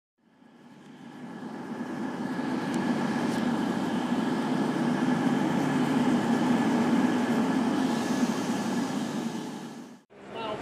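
Steady rumble of a train running, with a faint steady whine, fading in over about two seconds and fading out just before the end.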